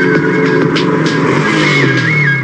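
Background music with a steady beat over a motorcycle engine running, its note falling in the second half.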